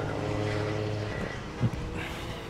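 An engine running steadily at a constant pitch, easing off about a second in.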